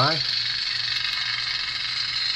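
Lightsaber sound board playing a Kylo Ren-style unstable blade hum through the hilt's speaker: a steady crackling hiss over a faint low hum, with no swing or clash sounds.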